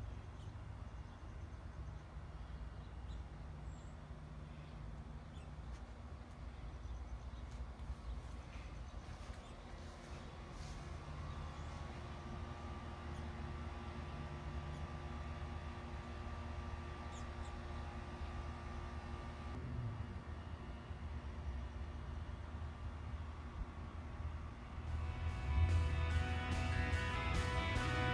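Wind blowing on the microphone outdoors, a low, uneven rumble. Music comes in near the end.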